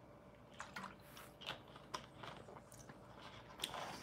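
Faint gulps and swallowing as a man drinks soda from a plastic bottle, with small irregular clicks and crinkles of the bottle.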